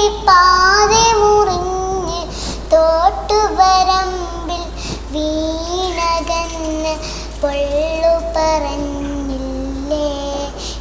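A young girl singing a Malayalam song solo, in several phrases of long held notes with wavering, sliding pitch.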